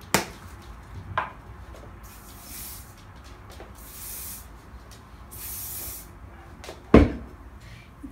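Aerosol hairspray can sprayed in three short hisses, each under a second. A couple of sharp clicks come before the spraying, and a loud thump about a second before the end.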